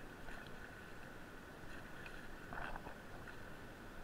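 Faint steady rush of river water from a whitewater rapid, with a brief burst of splashing about two and a half seconds in.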